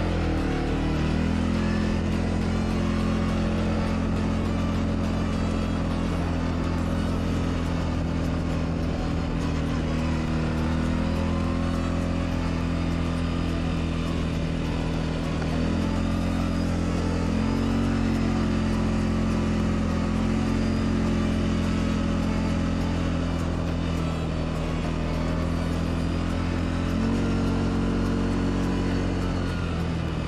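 CF Moto 520L ATV's single-cylinder engine running steadily under way, its note stepping up and down a few times as the throttle changes.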